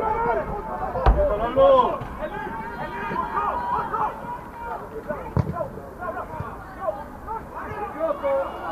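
Players and spectators shouting and calling across a football pitch, loudest in the first two seconds. Two sharp thumps of a football being kicked, one about a second in and one about five seconds in.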